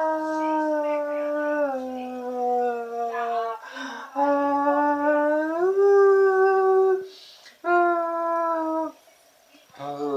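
A man singing a cappella: long held wordless vowel notes that slide down or up between pitches, with short breaks about four and seven seconds in and a brief pause near the end.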